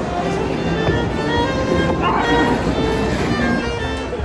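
Background music with bowed strings holding long notes that change every second or so.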